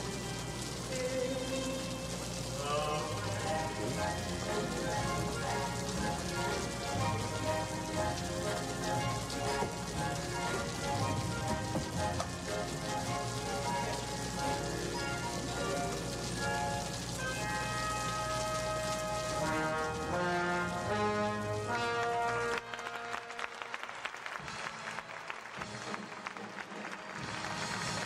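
Orchestral show music playing over the steady hiss of stage rain falling. Late on, the music stops abruptly and only the rain goes on.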